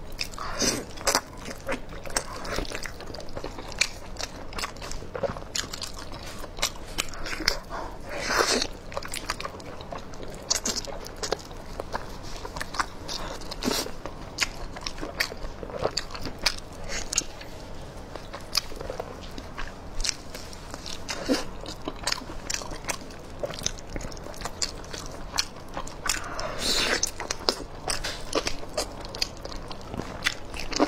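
Close-miked eating of braised pig trotters: biting and gnawing the skin and meat, with chewing and a steady run of irregular sticky clicks and smacks. Two longer stretches stand out, about eight seconds in and again late on.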